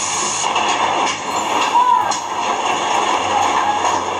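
Heavy hailstorm: hail and rain pouring down in a steady, dense roar.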